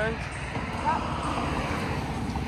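A car passing on the road beside the sidewalk: a steady rush of tyre and road noise.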